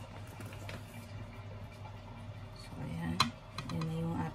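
A single sharp tap about three seconds in, as a plastic measuring cup of flour is tipped into a bowl, over a steady low hum; a voice starts near the end.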